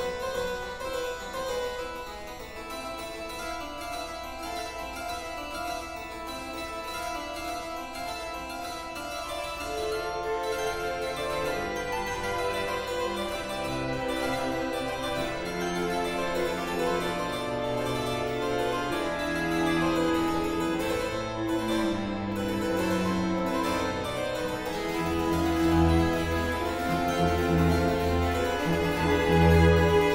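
Harpsichord and a small string ensemble playing a concerto for harpsichord and strings written in 2016. The texture is light and high at first, lower string parts come in about a third of the way through, and the music grows fuller and louder near the end.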